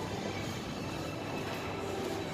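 Steady indoor mall ambience: an even, low rumble of background noise with no distinct events.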